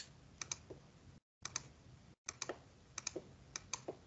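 Faint, sparse clicks, several in close pairs about a second apart, from keys being entered on a computer: the input of "ln(24.6" into a TI-84 calculator emulator.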